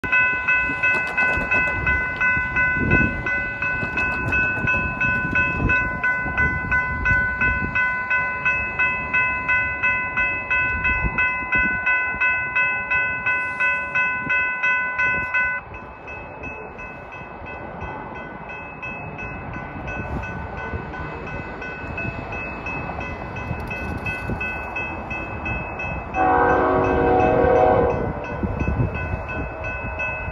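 Grade crossing bell ringing in an even, rhythmic pattern, cutting off suddenly about halfway through with the gates lowered. Near the end, one blast of about two seconds from the approaching Norfolk Southern locomotive's Nathan K5HL five-chime horn.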